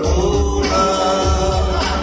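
A male singer sings a Bengali song live with a band, amplified through a concert sound system. Held, bending sung notes ride over a steady bass beat.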